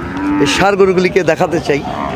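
Cattle mooing at a livestock market: one low, steady moo near the start, with talking following it.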